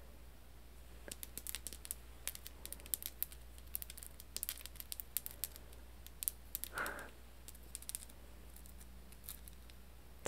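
Long fingernails tapping and scratching over a rough pyrite (fool's gold) crystal cluster: a run of soft, quick, irregular clicks.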